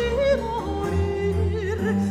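A soprano sings an ornamented Baroque cantata line with wide vibrato and quick melismatic turns, over a sustained accompaniment of a small string ensemble.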